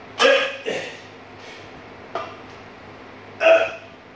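A man grunting and exhaling hard with effort as he swings a 135 lb barbell up in cheat curls. There is a loud grunt at the start, a weaker one just after, a short one about two seconds in, and another loud one near the end.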